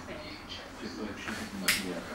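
Newborn puppies suckling at their mother: soft smacking clicks, with one sharp click near the end.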